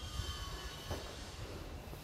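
Low, steady background rumble of a city street, with a faint thin high whine in the first second.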